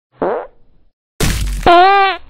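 Edited-in cartoon sound effects. A short falling-pitch blip comes first. Then, just past halfway, a noisy burst leads into a loud wobbling, buzzy tone.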